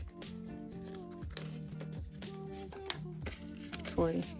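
Background music: a mellow track with a steady beat and sustained melodic notes.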